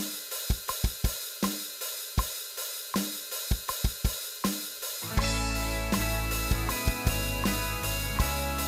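Roland V-Drums electronic drum kit playing a rock beat of kick and snare hits under a hi-hat and cymbal wash. About five seconds in, the song's backing track comes in with sustained pitched instruments under the drums.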